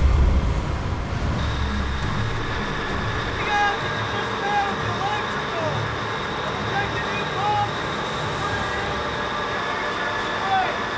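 A low rumble in the first two seconds, then a steady machinery hum with a thin, steady high whine in a fishing boat's engine room, under a man's voice.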